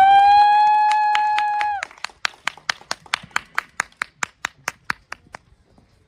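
Electric violin holding the last note of the piece, sliding up into it and cutting off about two seconds in. Then clapping in an even beat, about four to five claps a second, fading out near the end.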